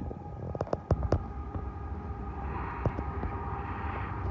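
Approaching freight train led by a GE Evolution-series diesel locomotive, heard as a steady low rumble with a faint steady tone over it, the noise growing a little in the second half. A few sharp clicks come about a second in.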